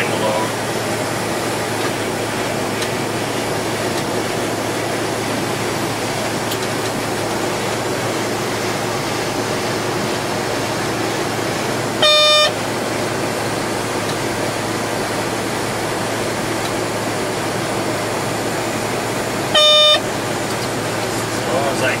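Steady flight-deck noise of a Boeing 727-200 in flight on approach: a constant rush of airflow with a low hum. Twice, about halfway through and again near the end, a short, loud electronic beep sounds for about half a second.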